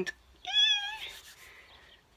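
A woman's short, high-pitched squeal of excitement, lasting about half a second, beginning about half a second in.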